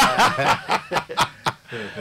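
A man laughing in a quick run of short bursts that trails off near the end.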